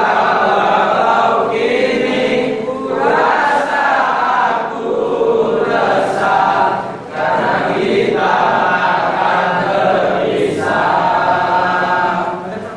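A group of young men's voices singing together in unison, in sustained phrases of two to three seconds with brief breaks between them.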